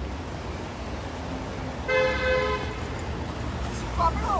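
A car horn honks once, a short steady two-tone toot about two seconds in, over a low steady street rumble.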